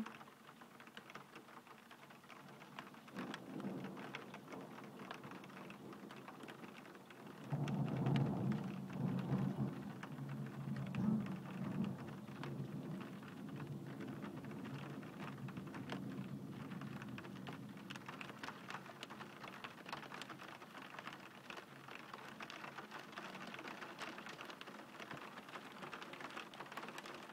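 Steady rain with drops ticking on a hard surface close by, and rolling thunder from a big lightning strike: a low rumble builds a few seconds in, swells suddenly about seven seconds in, and slowly dies away.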